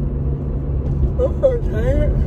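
Steady low road rumble inside a moving car's cabin. About a second in, a woman's voice comes in with a drawn-out yawn that rises in pitch near the end.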